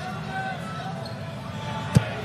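Basketball arena crowd noise held at a steady murmur, then a single sharp knock of the basketball hitting the rim or court just before the end.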